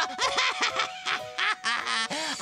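A cartoon character giggling in short, repeated, squeaky syllables, over a held note of background music.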